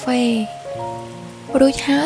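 Pig intestine sizzling in a frying pan as sauce is spooned in, under background music with steady held notes.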